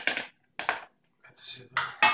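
A spoon clinking and scraping against a mixing bowl and frying pan: a few short, separate knocks and scrapes.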